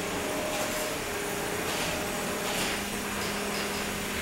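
Steady whirring of 3 lb combat robots' spinning weapons and drive motors: an even hiss of noise with a held humming tone that settles lower as it goes.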